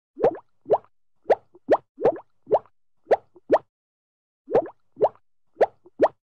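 Underwater bubble sound effects: a string of about eleven short plops, each quickly rising in pitch, about two a second with a pause in the middle.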